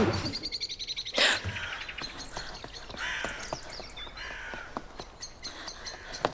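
Small birds chirping, with a rapid high trill in the first second and more calls later. A sharp knock comes about a second in, and from about two seconds in there is a quick run of light footsteps on stone.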